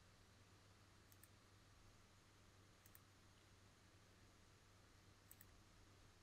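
Near silence: a faint steady low hum with a few faint, short clicks.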